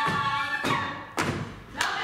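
A group of women singing a Slovak folk song together, then three heavy stamps of dancers' boots on the stage floor in the second half as the singing drops away.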